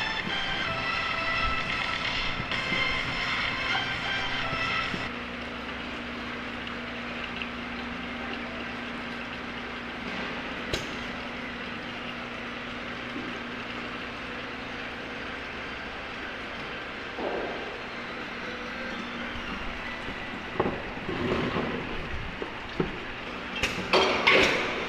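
Industrial machinery: for about five seconds a steady high whine of several tones, then it drops to a quieter steady hum with a low tone. A sharp click about eleven seconds in, and scattered knocks and clatter near the end.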